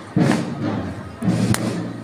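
Heavy thumps at a slow, even pace, about every second and a half, over low sustained notes: the bass drum and band of a processional march.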